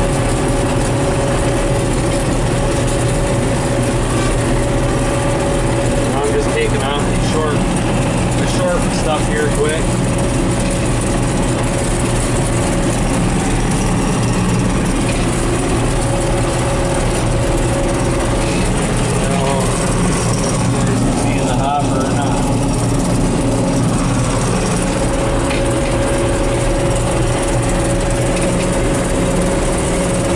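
A John Deere 4400 combine running steadily while cutting soybeans, heard from inside the cab: a dense, even drone of the engine and threshing machinery with a steady whine. Brief faint snatches of a voice come through a few seconds in and again past the middle.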